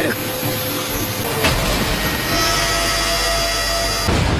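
Anime sound effect of a spinning wind-blade attack (Naruto's Rasenshuriken), a dense whirring rush of air. There is a sharp hit about a second and a half in, then a heavier low rumble.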